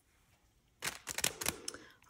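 Clear plastic packaging crinkling under hands, a quick run of sharp crackles starting about a second in.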